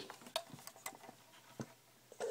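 A handful of faint, scattered clicks and light taps from a 1:24 diecast stock car being handled and turned around by hand.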